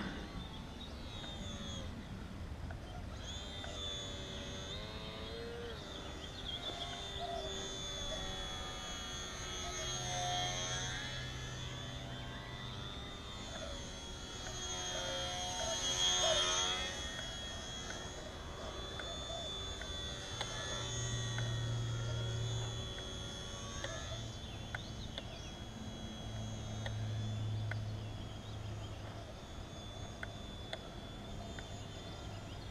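Small electric RC airplane (HobbyZone Sport Cub S) in flight: its motor and propeller give a steady high whine. The whine swells loudest about sixteen seconds in as the plane passes low and close, then fades as it flies off.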